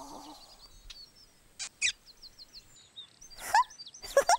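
Birds chirping: scattered high twitters, with a quick run of short repeated chirps about two seconds in and a few louder, sharper calls just before that and again near the end.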